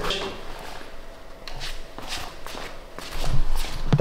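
Footsteps and shuffling on a studio floor, a series of irregular soft steps, with a low rumble of movement in the last second.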